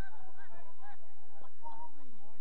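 Players calling and shouting to each other across a football pitch: several short, rising-and-falling shouts with no clear words.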